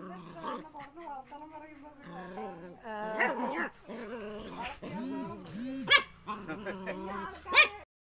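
A puppy whining, yipping and barking in short, high-pitched calls, with sharp, loud yips about six seconds in and again near the end.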